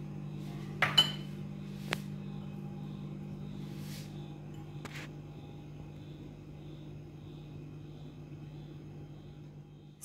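A few light clinks and knocks of dishware being handled on a kitchen counter, the loudest and most ringing about a second in, with others around two, four and five seconds, over a steady low hum.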